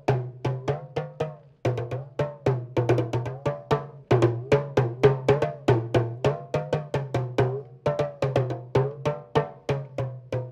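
West African talking drum, an hourglass pressure drum held under the arm, struck rapidly with a stick, several strokes a second. The pitch of its ringing bends up and down from stroke to stroke as the arm squeezes the tension strings.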